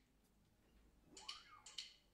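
Near silence, broken in the second half by faint sharp clicks about half a second apart: a drummer's stick count-in just before the band starts playing. A faint tone rises and falls once in between.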